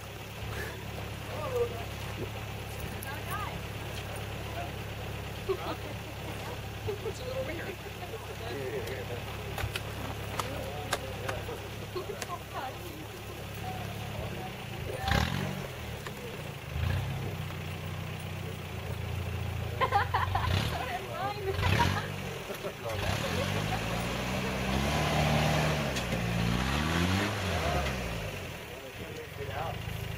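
Lifted Toyota 4Runner's engine idling as it crawls up a steep rock ledge, with a few sharp knocks about halfway through and again a little later. Near the end the engine is revved up and down several times as it pushes up the climb.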